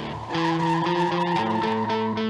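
Car tyres squealing in a long wavering screech as the car skids, over loud distorted electric guitar music.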